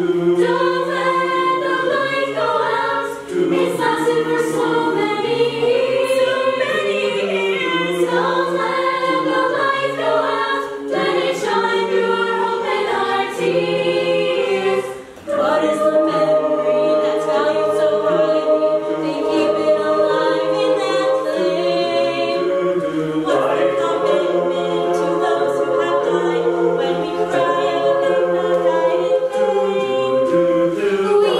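Mixed-voice a cappella group singing a Chanukah medley: a female lead voice over sustained sung backing harmonies, with the lead passing to different soloists. Short breaks in the sound about three and fifteen seconds in.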